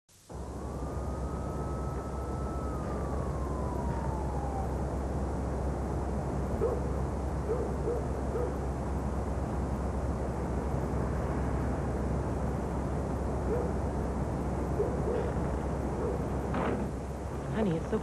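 Night-time city ambience: a steady low rumble, with one distant siren wail that rises, holds and then falls away in the first few seconds, and a few short low hoots in small groups through the middle.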